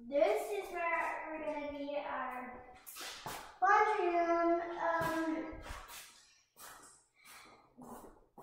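A young girl's voice in two long, drawn-out stretches of vocalising without clear words, each lasting about two seconds, with a few short clicks or knocks between and after them.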